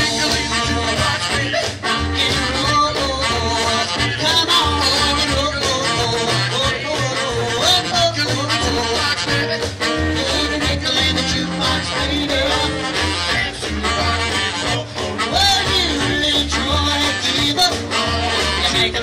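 A live band playing a 1950s-style rock and roll number: guitar and drums over a steady bass beat.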